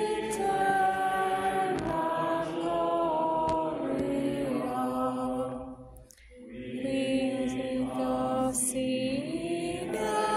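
Voices singing a slow, chant-like sacred melody in a church, with held notes and small glides between them. The singing stops briefly about six seconds in, then resumes.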